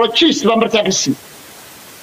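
A man talking for about a second, then a pause in which only a steady background hiss is heard.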